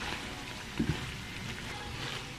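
Zucchini noodles in a garlic, cream and cheese sauce sizzling in a frying pan as metal tongs toss them: a steady hiss with a light knock about a second in.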